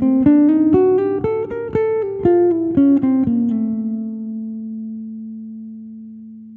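Nylon-string Godin electro-acoustic guitar playing a single-note jazz line over Fmaj7, D7, Gm7 and C7. The line resolves about three and a half seconds in on a held low A over Fmaj7, which rings and slowly fades.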